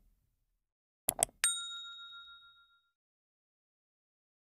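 Subscribe-button animation sound effect: two quick mouse clicks about a second in, then a bright notification-bell ding that rings out and fades over about a second and a half.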